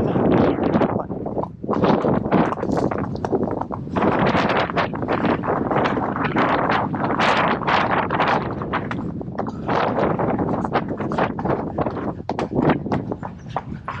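Barefoot horse's hooves striking a tarmac lane in a quick, dense run of hoofbeats, with wind rushing over the microphone.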